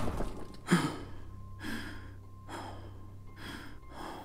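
A man's sharp, startled gasp about a second in, then heavy breaths in and out, roughly one a second, over a faint steady low hum.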